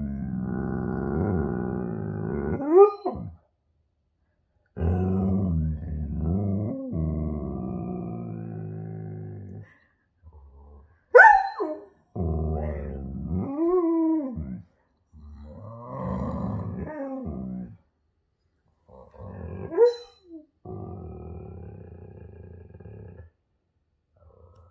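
A husky-type dog vocalizing in about seven drawn-out bouts with short pauses between: low, grumbling growl-like moans mixed with rising-and-falling howl-like yowls, the highest and sharpest of them about eleven seconds in.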